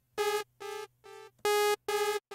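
Sawtooth synth note from Arturia Pigments' analog engine, repeated by the pitch-shifting delay at the same pitch (spray off). The echoes come about twice a second, each quieter than the last, and a fresh note sounds about one and a half seconds in, starting a new run of echoes.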